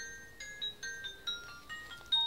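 A quiet tinkling melody of pure, bell-like chime notes, a new note about every quarter second.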